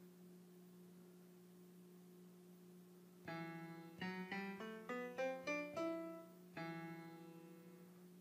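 GarageBand's Grand Piano sound, played on the iPad's on-screen keyboard in E minor scale mode. After about three seconds of near silence with a faint hum, a chord is struck, then a quick rising run of single notes, then a last note held and dying away near the end.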